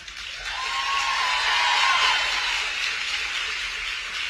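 Audience applauding, swelling over the first second and then slowly dying away.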